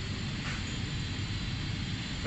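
Steady background noise of a large shop hall, an even hiss and low hum with no distinct bounces or knocks.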